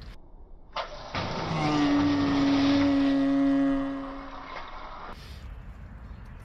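Pressurised water gushing out of an opened test port on an RPZ backflow preventer as the device is drained for winter. A rushing hiss carries a steady low tone; it swells over the first two seconds, then fades away about four seconds later.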